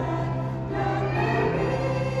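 A small mixed group of singers singing a Christian worship song together, with a low note held steady underneath.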